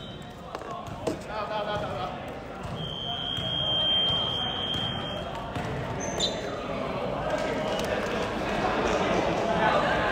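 Indoor basketball game sounds in a large echoing hall: a ball bouncing, players calling out, and a long steady high-pitched whistle about three seconds in.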